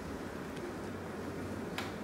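Quiet room tone with a steady low hum, and a single faint click near the end.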